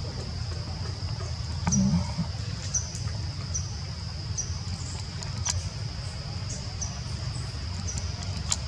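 Outdoor background sound: a steady high-pitched drone with short high chirps repeating about once a second, over a low rumble. A brief louder low sound comes about two seconds in.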